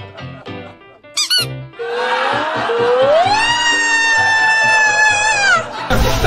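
A brief high squeak about a second in, then a long high-pitched cry that rises in pitch and holds for about three seconds before breaking off, over background music.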